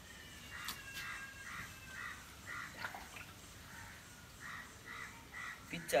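A bird calling in two runs of short, evenly spaced calls, about two a second, with a pause of about two seconds between the runs.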